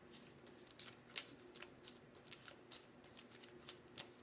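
A deck of oracle cards being shuffled by hand: a faint run of quick, uneven card snaps and slaps, several a second.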